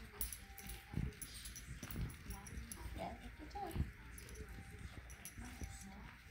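Chihuahua puppies playing, faint: a couple of short whimpering calls about halfway through, among light scuffling and small knocks of paws and toys.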